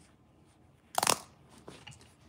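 A short crunching rustle about a second in, the loudest thing here, followed by two fainter rustles near the end.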